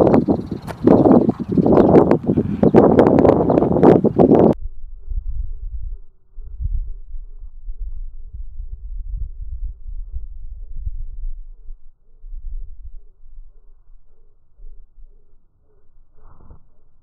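Heavy wind buffeting a phone microphone for the first four and a half seconds, cutting off abruptly to a faint, uneven low rumble of wind for the rest.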